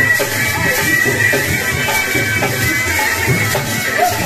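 Bagpipes playing loudly: a high melody line held over a steady low drone.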